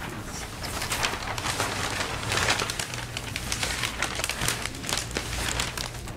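Papers rustling and being shuffled near a microphone, in irregular crisp rustles, over a steady low hum.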